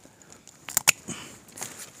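Two quick, sharp clicks of pruning shears about a second in.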